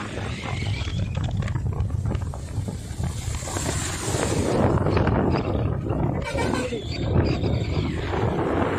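Wind buffeting the microphone of a moving motorbike, a heavy, rough rumble. A truck passes close on the wet road about three to four seconds in, adding a rising and falling hiss of tyres on wet tarmac.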